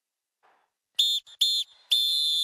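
A referee's whistle: after a second of silence, two short high blasts and then a long one, the two-short-one-long pattern of a football full-time whistle.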